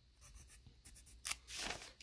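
Pencil writing on graph-paper notebook paper: a few short, faint strokes as a number is written, the loudest about a second and a quarter in.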